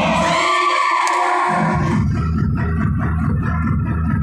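Dance-fitness music with a keyboard sound playing loud and steady. The bass drops out for about a second near the start, then a heavy beat comes back in about halfway through.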